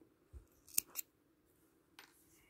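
Small scissors snipping off the end of the wool embroidery yarn at the back of the work: two quick, faint snips about a second in.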